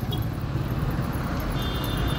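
Steady low rumble of road traffic and vehicle engines, with a faint high beep in the second half.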